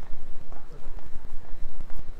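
Footsteps on a paved city sidewalk: an uneven run of soft thumps over a low, steady street rumble.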